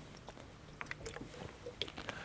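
Quiet auditorium room tone with a steady low hum and a few faint, soft clicks.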